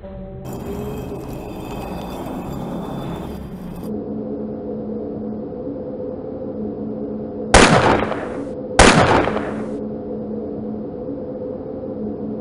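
Two loud gunshots about a second and a half apart, each followed by a short decaying tail, over ominous background music with steady held tones. A hiss-like burst of noise runs through the first few seconds.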